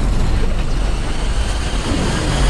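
Loud, continuous low rumble of a vast horde of creatures stampeding, film-trailer sound design with no breaks or distinct impacts.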